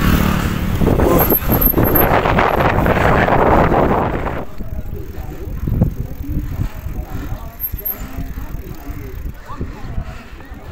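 Riding sounds from a bicycle on a busy street: a loud rush of wind and traffic noise that drops away after about four and a half seconds, leaving quieter street background with faint voices.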